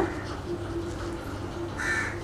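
Quiet room with a low steady hum, and near the end one brief, harsh bird call.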